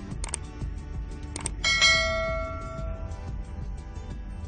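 Subscribe-button sound effect: two short clicks about a second apart, then a bright bell ding, the loudest sound, that rings on and fades over about a second and a half, over background music.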